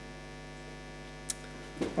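Steady electrical mains hum on the audio line, with one faint click a little after halfway.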